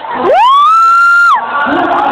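A spectator's loud, high-pitched shriek, sliding up in pitch, held for about a second, then dropping away. A cheering crowd can be heard before and after it.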